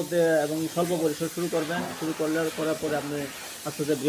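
Speech only: a man talking steadily, over a faint background hiss.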